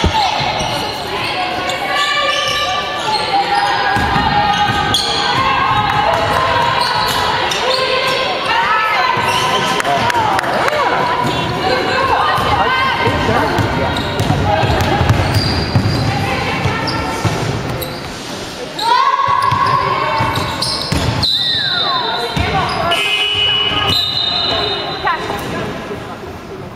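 Basketball bouncing on a wooden sports-hall floor during play, with players' voices calling across the court, all echoing in the large hall.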